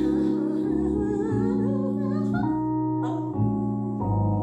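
A woman singing a Christmas song into a handheld microphone over held keyboard chords, her notes wavering with vibrato.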